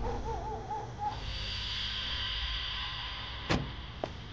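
A car door shutting once, about three and a half seconds in, over a low steady rumble, with a brief wavering tone near the start and a sustained high hiss after it.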